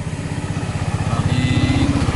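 Car engine running with the stock exhaust refitted, heard from inside the cabin: a steady, fast low pulsing that grows louder about a second in.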